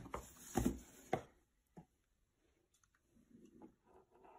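Cardboard packaging and a small plastic device being handled: a few short rustles and clicks in the first second and a half, then faint scuffs.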